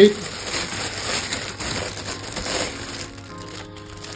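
Thin clear plastic bag crinkling and rustling in the hands as it is worked off a glass carafe, in irregular bursts that fade out near the end.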